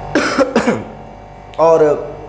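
A man coughing into his fist, a short bout of about half a second.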